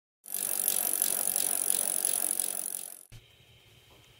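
A bicycle wheel spinning with its freewheel ticking rapidly, with a faint pulse about three times a second; it cuts off suddenly about three seconds in.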